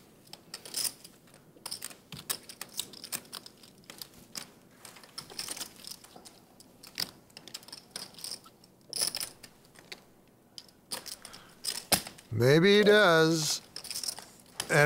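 Irregular light clicks and taps, scattered and uneven in spacing. Near the end a person's voice comes in briefly, the loudest sound.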